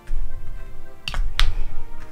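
Perfume atomizer sprayed twice onto a paper test strip: two short sprays about a third of a second apart, with low handling thuds, over background music.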